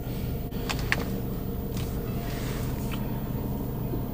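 Steady low hum of a car's idling engine heard inside the cabin, with a few light clicks about half a second to a second in.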